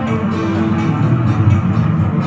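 Electric guitar played with a quick run of picked notes.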